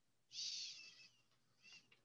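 A short high-pitched animal call lasting under a second, followed by a briefer second call near the end.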